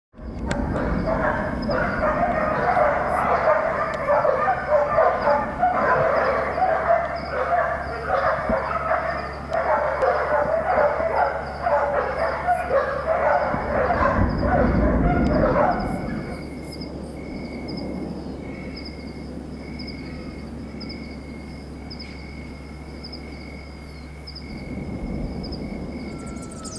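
Dogs barking over and over. About sixteen seconds in the barking stops, leaving a quieter stretch with a steady high chirring and a short high chirp repeating about once a second.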